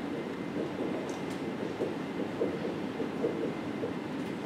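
Dry-erase marker squeaking and scraping across a whiteboard as a line of text is written, in short irregular strokes.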